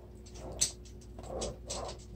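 Glue pen tip dabbing on a paper envelope flap, with light paper handling: a sharp click about half a second in, then soft rustling.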